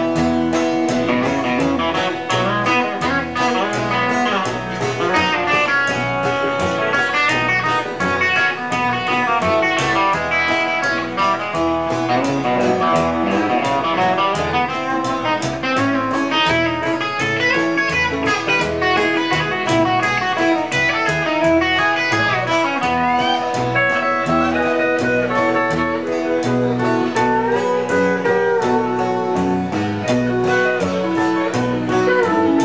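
Live country band playing an instrumental break: a fast guitar lead over upright bass keeping a steady beat.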